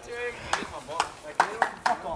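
Voices calling out at an outdoor backyard wrestling match, with about five sharp, irregular smacks, the loudest of them near the end.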